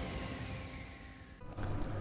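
The tail of a TV news bulletin's opening theme music fading down, cut off abruptly about one and a half seconds in. After the cut a quieter low sound is left.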